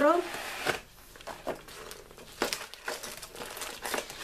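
Irregular crinkling and rustling of packaging as a cardboard kit box is opened and sheets of shrink plastic are pulled out, with scattered small clicks.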